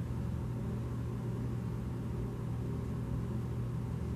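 Steady low hum with a faint, even hiss behind it, unchanging throughout: background noise with no distinct events.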